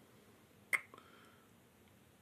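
A single short, sharp mouth sound from the man, a click-like hiccup about three quarters of a second in, over faint room tone.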